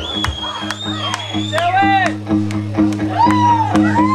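Live rock band playing: electric guitar and bass over steady drum hits, with a high held note for the first second and a half and voices calling over the music.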